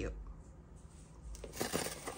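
Soft rustling and a few light clicks of a small cardboard blind box and card being handled, starting about a second and a half in.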